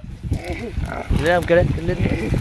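Water buffalo giving one short bellow with a wavering pitch a little past halfway through, an agitated call at a dead buffalo's carcass.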